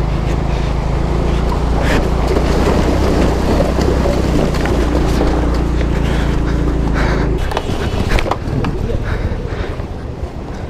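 Wind buffeting the microphone on a moving TVS Jupiter scooter, with the scooter's engine hum steady underneath. It drops away about seven seconds in, leaving quieter wind and faint voices.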